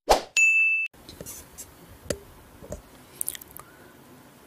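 A sharp hit, then a bright ringing ding held for about half a second that cuts off abruptly: an intro sound effect. Faint room noise with a few soft clicks follows.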